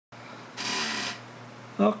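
A short hiss, about half a second long, starting about half a second in, over a faint steady hum; a man's voice begins near the end.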